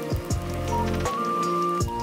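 Background music with a steady beat, bass and held melody notes.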